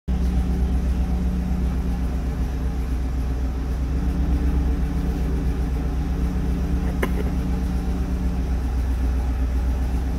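An engine running at a steady idle: an even low rumble that holds the same pitch throughout, with a single sharp click about seven seconds in.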